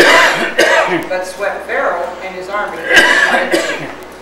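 Speech: a congregation reading a psalm aloud together, with a sharp cough-like burst about three seconds in.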